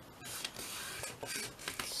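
Paper rustling and sliding as a sheet is folded and creased flat by hand: a longer swish followed by a few shorter ones.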